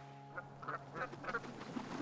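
Ducks quacking: a run of about four short calls beginning about half a second in, then more scattered, busier calling near the end.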